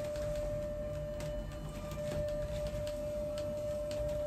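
A steady, single-pitched hum that holds one unchanging tone, over a low rumble.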